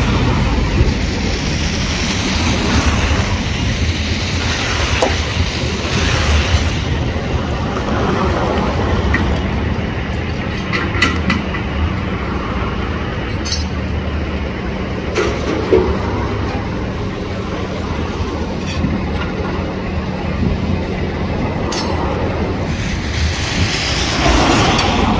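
A heavy utility truck's engine running steadily at idle, a constant low rumble, with street traffic going by. A few sharp clicks come in the second half.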